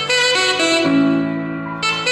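Instrumental music played through a Harman Kardon Invoke smart speaker over Bluetooth: a melody of held notes over a sustained bass line, changing notes about a second in and again near the end.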